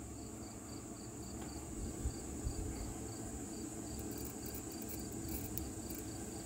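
Faint, steady insect chirping: a short high chirp about three times a second over a steady high-pitched hiss, with a couple of soft knocks about two seconds in.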